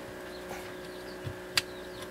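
Hands handling wiring and a fuse block on a wall: a soft knock, then one sharp click about one and a half seconds in, over a faint steady hum.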